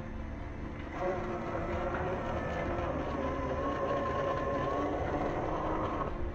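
Sequre 1800kv brushless outrunner motor and drivetrain of an RC rock crawler whining under throttle as the truck crawls over rock. The whine picks up about a second in and then holds a fairly steady pitch.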